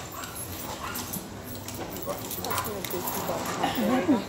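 A dog whining in short, high, wavering calls, starting about halfway through and growing more frequent toward the end, with people talking in the background.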